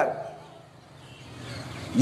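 A pause in a man's speech over a public-address system: his last word fades out over about half a second, then only faint steady background noise with a low hum.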